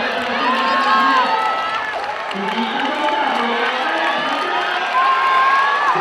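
Spectators cheering and shouting on runners in the closing stretch of an 800 m race, many voices at once, with long drawn-out yells about half a second in and again near the end.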